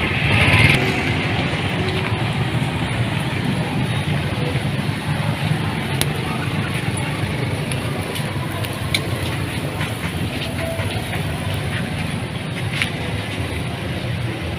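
Steady outdoor street ambience, mainly a low rumble of traffic with a few sharp clicks and clinks. Background music fades out about a second in.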